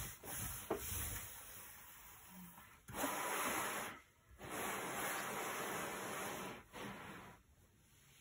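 An assembled cardboard jigsaw puzzle being slid and turned around on a tabletop by hand, scraping over the table. Short rubs come first, then two longer scraping stretches from about three seconds in.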